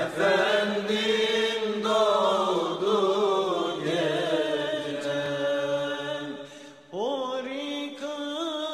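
A solo male voice chanting a religious melody in long, ornamented held notes. The voice breaks off briefly near the end and comes back in with a rising slide.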